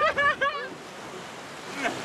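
Steady surf and wind noise on the microphone, following a short stretch of a man's voice at the very start.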